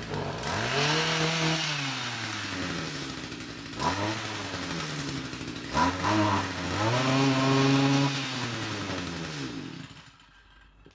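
Small two-stroke engine of a Stihl trimmer power head, running and being revved: a rev in the first couple of seconds, short blips, then a longer held rev, before it cuts off near the end. It runs unloaded, because the hedge trimmer attachment is not turning: the drive shaft has not gone in far enough to engage.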